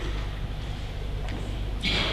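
A pause in speech: steady low room hum through the hall's microphone, with a faint click and a man's voice starting again near the end.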